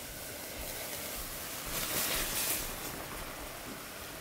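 A pot of boiling water hissing and fizzing as washing soda is poured in, with a louder surge of hissing about two seconds in as the boiling water froths up at the soda.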